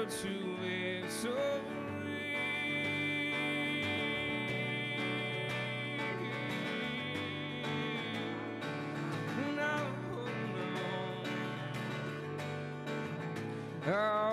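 Acoustic guitar strummed steadily in a live solo performance, an instrumental stretch between sung lines; the singing voice comes back in at the very end.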